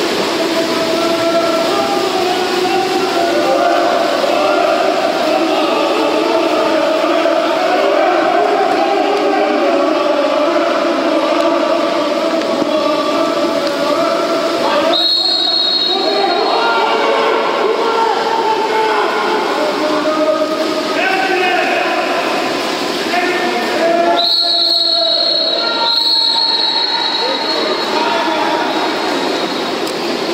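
A steady din of many voices calling and shouting in an indoor pool hall. A referee's whistle gives a short blast about halfway through and two longer blasts near the end.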